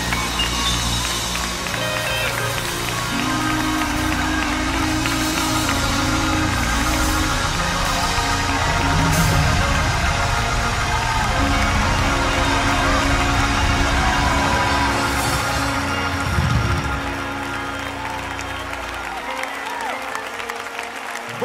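Live gospel music from a choir and band, with sustained chords over a strong bass. Near the end the bass falls away and the music gets quieter.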